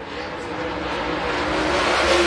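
A dirt super late model race car's V8 engine running at full throttle on a timed lap, growing steadily louder.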